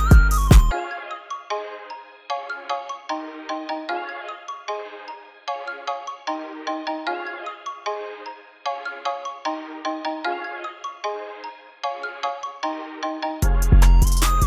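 Trap-style hip-hop instrumental in a breakdown: the drums and deep bass drop out about a second in, leaving only a high melodic loop of short, quickly fading notes. The drums and bass come back in just before the end.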